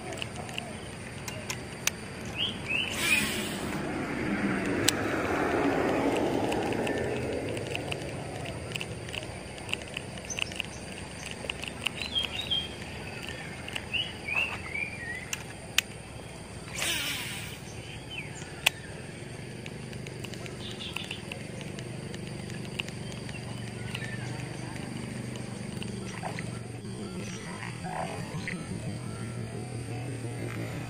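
Outdoor roadside ambience: a road vehicle passes, its sound rising about three seconds in and fading by about eight seconds, with short runs of bird chirps, scattered faint clicks and two brief hissing bursts over a low steady background.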